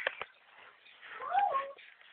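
A cat meowing once, a single call that rises and falls in pitch a little over a second in, after a couple of short clicks at the start.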